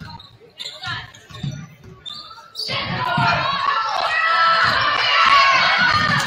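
Basketball being dribbled on a hardwood gym floor, short thuds about every half second, with scattered voices echoing in the hall. About two and a half seconds in, loud shouting sets in and carries on.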